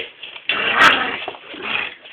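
Staffordshire bull terrier puppy making vocal play noises, loudest in a burst from about half a second to a second in, with a sharp click in the middle of it.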